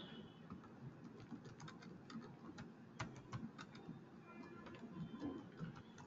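Faint typing on a computer keyboard: a run of soft, irregular key clicks.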